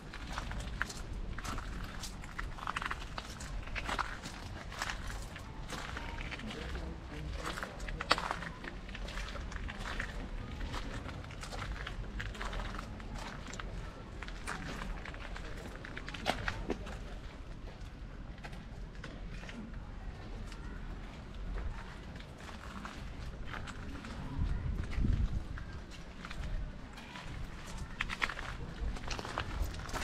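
Footsteps crunching on a gravel path at a walking pace, in uneven steps about one or two a second.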